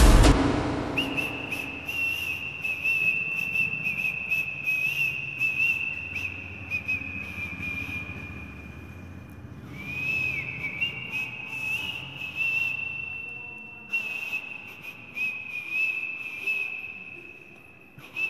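The music stops at the start, leaving a high, steady whistle-like tone that wavers slightly and breaks off briefly about ten seconds in. Faint scattered crackles run beneath it.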